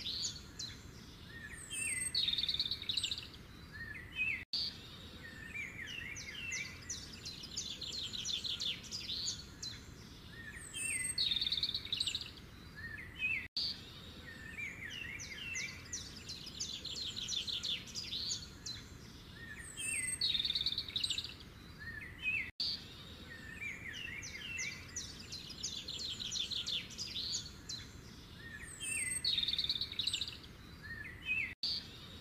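Birdsong, quick chirps and fast trills, on a short loop that repeats the same phrase pattern about every nine seconds, with a brief dropout at each repeat.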